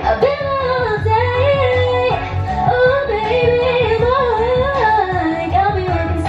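Woman singing live into a handheld microphone over a pop/R&B karaoke backing track, her voice drawn out in a wavering, gliding melody over a steady pulsing bass beat.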